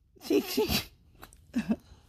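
A child giggling breathily, in a longer burst near the start and a short one near the end.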